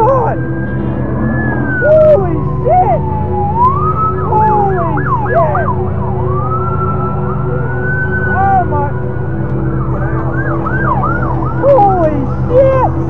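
Police car sirens from a passing pursuit: a long slow wail that falls and then rises again, twice broken by rapid yelp sweeps, with more than one siren overlapping. A steady low drone runs underneath.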